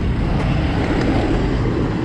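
Steady noise of busy road traffic passing close by: tyres and engines of cars and trucks.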